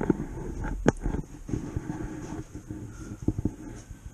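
Handling noise from a camera being picked up and moved: rubbing and a low rumble on the microphone, with a sharp knock about a second in and a few small clicks near the end.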